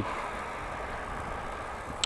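Steady, even rush of wind and road noise from an e-bike riding along a roadside pavement.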